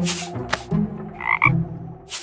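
Cartoon frog sound effect: a two-part croak about a second in, after two short knocks.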